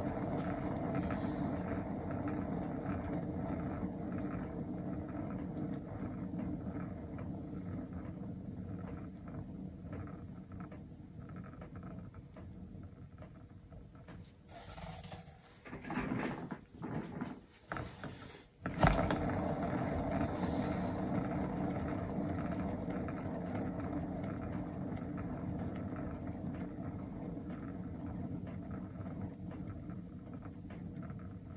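A painting turntable spinning with a steady rotating rumble that slowly fades as it slows. It stops about 14 seconds in, with a few soft knocks. About 19 seconds in it is set spinning again with a sharp click, and it runs on, fading gradually.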